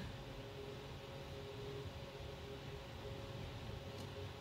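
Quiet room tone: a faint, steady hiss with a low hum underneath.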